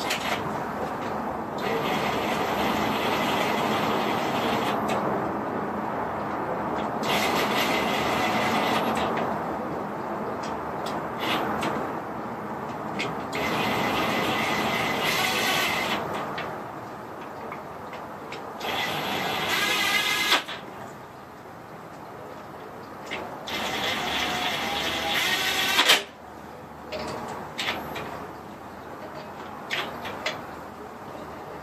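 Cordless power tool running ARP nuts down onto the cylinder-head studs of a V8 engine block, in about five runs of a few seconds each with pauses between as it moves from nut to nut.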